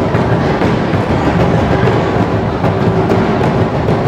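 An ensemble of Minangkabau tambua, large double-headed drums struck with sticks, playing together in a dense, fast, steady rhythm.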